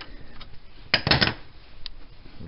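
Sharp metallic clicks and rattle from a torque wrench and socket working the front strut bolts, which are being tightened to 114 foot-pounds. There is a close cluster of clicks about a second in and a single click near the end.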